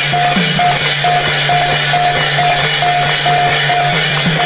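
Pala instrumental interlude: large brass hand cymbals clashing in a fast, continuous rhythm over a two-headed barrel drum whose strokes fall in pitch. A short high note repeats about twice a second through it.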